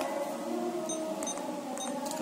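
Keypad beeps of a Verifone VX675 card terminal as its keys are pressed: about four short high beeps in quick succession, starting about a second in.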